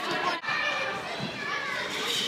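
Young girls' voices chattering over one another, indistinct, in a large gym hall.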